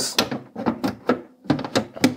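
Brush ring of a Merz Servidor electric shoe cleaner being twisted back into its mount by hand, giving several short clicks and knocks.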